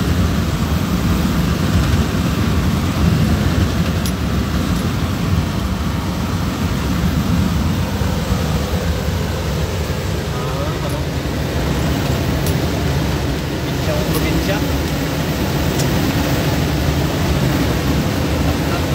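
Steady drone of engine and road noise inside a moving truck's cab, heaviest in the low end.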